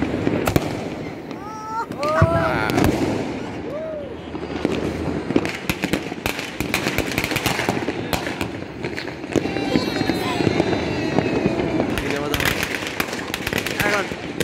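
Fireworks and firecrackers going off all over a city: a dense, uneven run of bangs and cracks, thickest in the second half.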